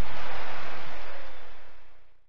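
Ford monster truck running in an arena: a loud, even wash of engine and crowd noise that fades out over the last second.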